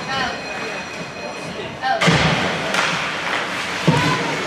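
Ice hockey game sounds: shouting voices, then a sudden loud burst of noise about halfway through, and a sharp thud near the end.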